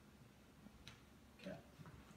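Near silence in a room, broken by one faint, short click a little under a second in.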